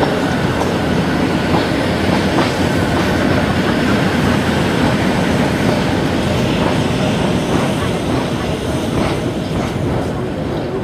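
Passenger train carriages rolling along the track in a steady, loud rumble, with the wheels clacking over the rail joints now and then.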